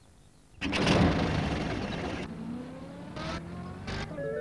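Small post van's engine starting about half a second in and pulling away, its pitch rising steadily as it speeds up.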